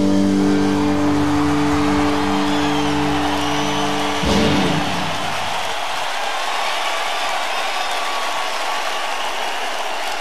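A rock band's last chord held ringing on electric guitar and bass, cut off by a final band hit about four seconds in. Then an arena crowd cheers and whistles.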